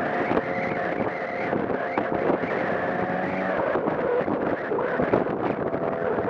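Motor scooter engine running at a steady cruise, heard from the rider's seat with wind noise on the microphone.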